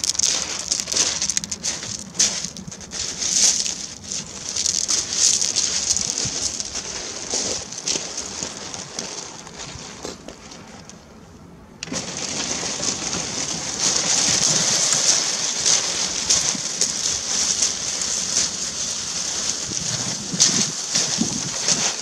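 Loose shingle crunching and rattling as pebbles shift under feet and wheels, a dense hiss of tiny clicks. It fades for a moment past the middle, then comes back suddenly.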